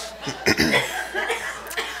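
A man coughing sharply about half a second in, then clearing his throat near the end.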